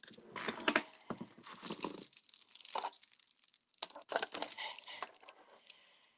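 Metal jewelry, a silver bead necklace and chain, jangling and clinking as it is picked up and moved about on a tray: irregular runs of small, quick clicks.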